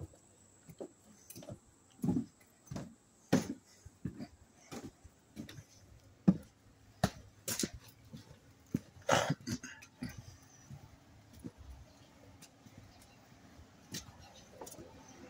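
Footsteps of someone walking across a wooden deck and along a concrete walkway, about one and a half steps a second, thinning to a few scattered steps after about ten seconds.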